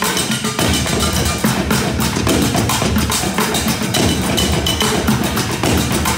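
Percussion played with drumsticks on pots, pans and metal stoves: a steady, fast rhythm of sharp metallic and wooden strikes.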